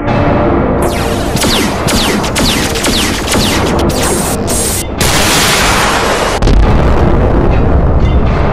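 Action sound effects over background music: a rapid run of sharp blasts, some with short falling whistles, for several seconds, then a rush of noise and a deep boom about six and a half seconds in.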